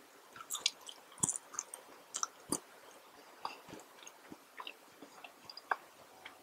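Chewing of McDonald's fast food, with irregular wet clicks and smacks from the mouth. The sharpest come about a second in and two and a half seconds in.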